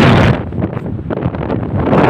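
Wind buffeting the microphone: a loud gust that drops off about half a second in and builds again near the end.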